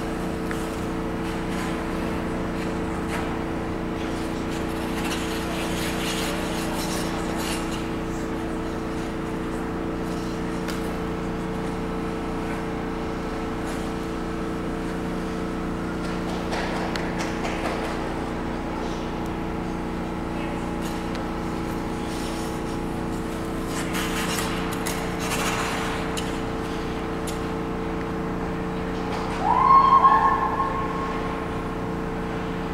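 Steady hum of indoor ice-rink machinery, holding several constant low pitches, with a few brief swishes of skate blades on the ice. Right at the end a loud rising whoop.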